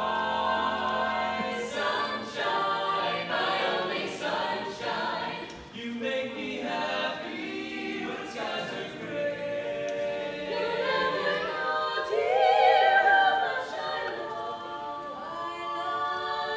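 Mixed-voice a cappella choir singing in close harmony with no instruments, in a domed hall. The voices swell to their loudest about three quarters of the way through.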